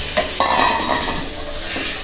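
Freshly added mutton pieces sizzling in oil and spice masala in an aluminium pressure cooker, stirred and scraped with a wooden spatula. A steady hiss runs underneath the scraping of the spatula on the pan.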